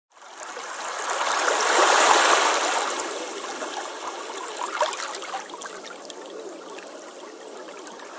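Running water, swelling to its loudest about two seconds in and then slowly fading, with faint bubbling gurgles.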